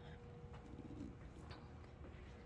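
Quiet indoor room tone with a faint steady hum, and one faint, brief low sound a little under a second in.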